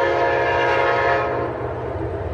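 Amtrak P42DC diesel locomotive's air horn sounding a loud, steady multi-note chord, cutting off about a second and a half in.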